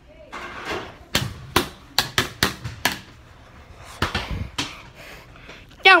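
A run of about ten sharp knocks and thumps, irregularly spaced, starting about a second in and ending about a second before the end.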